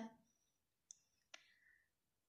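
Near silence with two faint clicks about half a second apart around the middle.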